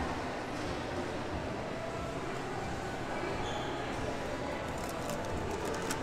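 Steady background hum of a busy shop counter, with faint, indistinct voices far off and a few faint clicks near the end.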